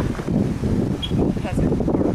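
Wind buffeting the camera microphone: an uneven, gusting low rumble.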